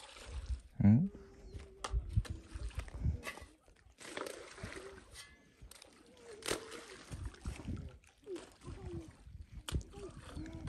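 Clumps of cow dung thrown off a shovel splashing into shallow pond water, a few separate splashes, with brief voices in the background.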